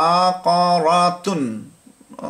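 A man's voice intoning Arabic reading syllables in a drawn-out, chant-like tone. He holds a level pitch for about a second, with one short break, then his voice falls away.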